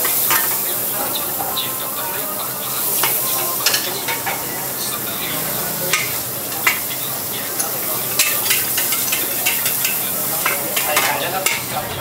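Sliced vegetables sizzling in a hot wok while a metal ladle stirs and scrapes them, with frequent sharp clinks of the ladle against the wok.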